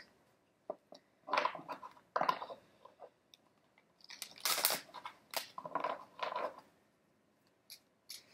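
Deck of Lenormand cards being shuffled by hand: several short bouts of cards rustling and flicking against each other, with brief pauses between them.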